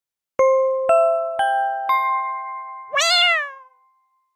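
Intro jingle: four ringing chime notes about half a second apart, each a step higher, then a single meow near the end.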